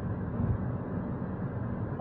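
Steady low background rumble with no other event.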